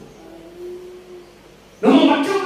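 A pause in a man's speech into a microphone: a faint, single drawn-out tone lasting about a second, then his voice returns loudly near the end.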